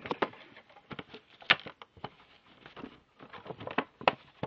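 A container being handled and wiped with a wet paper towel: irregular soft clicks, taps and rubs, the loudest about one and a half seconds in.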